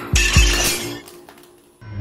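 Two heavy bangs of fists pounding on a closed toilet stall door, with a bright crashing noise over them and music underneath. Both die away to near quiet near the end.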